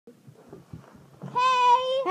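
A child's high-pitched voice letting out one drawn-out held note, a squeal or sung call, starting a bit over a second in after faint rustling.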